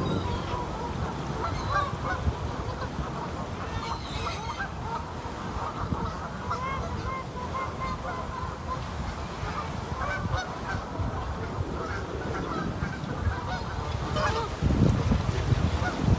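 A flock of Canada geese honking, many short overlapping calls throughout. Near the end, wind rumbles on the microphone.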